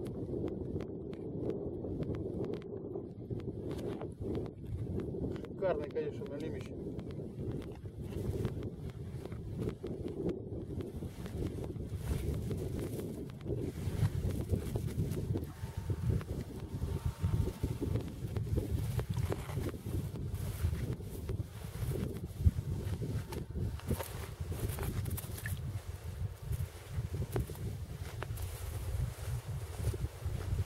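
Wind buffeting the microphone as a steady low rumble, with scattered small clicks and rustles of a fishing line and cord being handled at a hole in the ice; one louder click past the middle.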